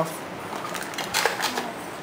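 Product packaging being handled by hand, paper and a clear plastic tray: a short run of crackles and clicks about a second in.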